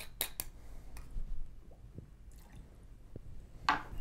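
Faint bar-work sounds: a brief trickle of vermouth being tipped from a jigger onto ice in a mixing glass, with a few light clicks and taps of the bottle and bar tools being handled.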